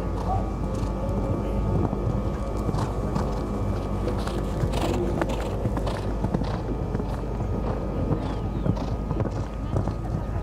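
Show-jumping horse cantering on a sand arena, its hoofbeats heard over steady background chatter and music.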